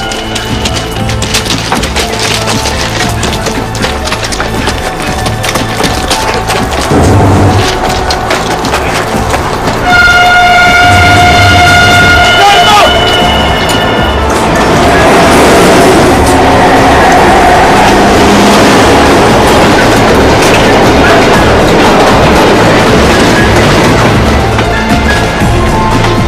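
Tense film score with a pulsing low beat, over which an electric train's horn sounds as one flat blast for about three seconds, some ten seconds in; from about fourteen seconds on, the rushing noise of a passing train fills in under the music.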